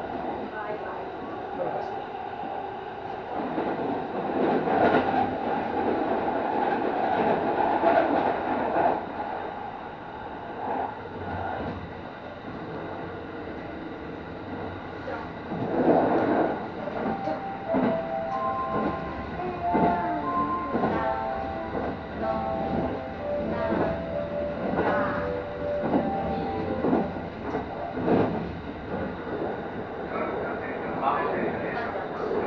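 Kintetsu 23000-series Ise-Shima Liner express running at speed, heard from the driver's cab: a steady rumble of wheels on rail with clacks as the wheels pass over rail joints. In the second half, a string of brief high tones at changing pitches sounds over the running noise.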